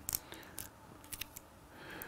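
A few faint, short clicks of a pole rig and its winder being handled.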